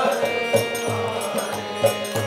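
Harmonium playing a held chord between the sung lines of a devotional bhajan, over a steady low drum beat of about three or four strokes a second.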